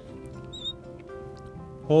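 A marker squeaking briefly on a glass writing board about half a second in, over soft background music with steady held tones.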